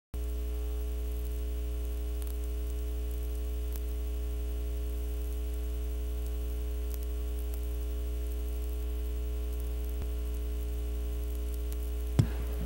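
Steady electrical mains hum with a stack of overtones, with faint static crackle and a few light clicks.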